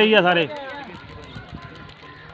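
A man's loud, drawn-out shout ends about half a second in, followed by quieter talk from a crowd of men.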